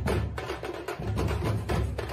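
Background music with a fast, steady percussive beat, sharp wood-block-like clicks several times a second over a heavy bass.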